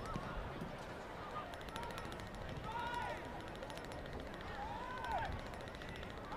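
A few distant drawn-out shouts from players on the pitch, one about three seconds in and another about five seconds in, over the steady low murmur of a stadium crowd.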